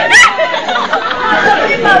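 A roomful of people chattering excitedly over one another, with a high-pitched squeal right at the start.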